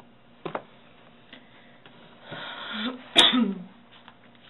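A person sneezes once: a drawn-in breath, then a sharp, loud burst with a short falling voice after it.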